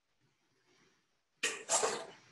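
Near silence, then near the end a man coughs: a short, sharp cough in two quick bursts.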